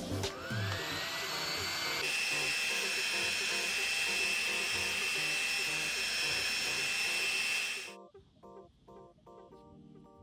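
Ortur Laser Master 2 Pro S2 laser engraver with its 10 W module running: a rising whine as it spins up over the first couple of seconds, then a steady whine and hiss while it engraves. It stops suddenly about eight seconds in, leaving soft background music.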